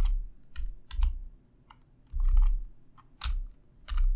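Computer keyboard keystrokes: a few irregular key presses, single or in quick pairs, with short pauses between them, several with a dull low thud.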